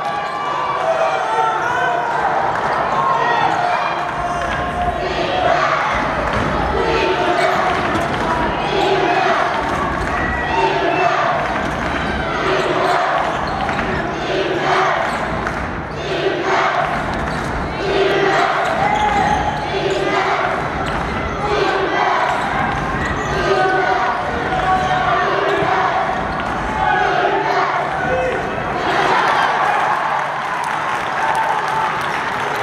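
A basketball being dribbled on a hardwood court, with voices carrying through the arena around it.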